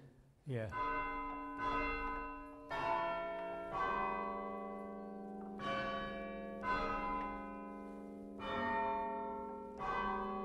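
Church tower bells chimed from a rope chiming frame, each pulled rope swinging a hammer against the side of a stationary bell. About seven strokes on different bells, roughly a second apart, each note ringing on and overlapping the next.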